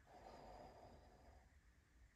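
Near silence: room tone, with a faint breath in the first second.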